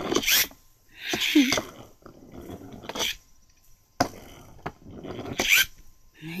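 Small spring-wound pullback toy kart whirring in several short bursts as it is pulled back and let go to run across a plastic tray, with sharp knocks against the plastic between them.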